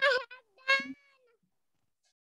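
Two short high-pitched vocal calls, the second ending in a downward glide, meow-like.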